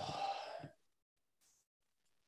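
A person's drawn-out "oh" trailing off into a sigh, falling in pitch and fading out under a second in; then silence.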